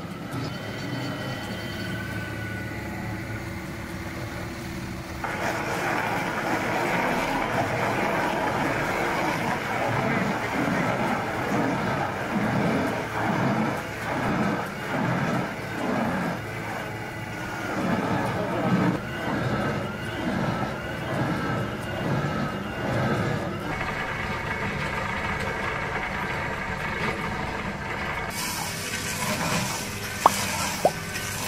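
A tractor engine working under load while a rear-mounted, PTO-driven Rotor stump grinder bores down into a tree stump and chews it into chips. It gets louder about five seconds in, and through the middle the note swells and dips in a regular rhythm as the cutter bites.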